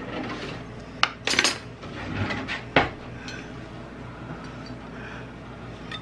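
Metal spoons clinking against glasses of egg dye: a sharp clink about a second in, a couple more around a second and a half, and another near three seconds.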